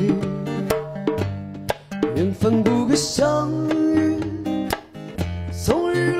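Live acoustic guitar strummed as accompaniment to a sung melody in a slow song.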